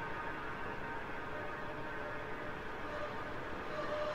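Steady, low background noise, an even hiss-like bed with a faint steady tone coming up near the end, in a pause between spoken lines.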